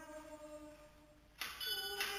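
Church music: a held chord fades away, then about one and a half seconds in a new, louder chord begins suddenly, the start of the entrance music as the Mass begins.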